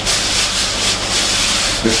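Orange halves twisted and pressed against a blue plastic hand-held citrus juicer, a steady scraping rub as the juice is squeezed out.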